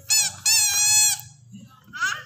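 Toy trumpet blown in two high honks, a short one and then a longer one of about three-quarters of a second.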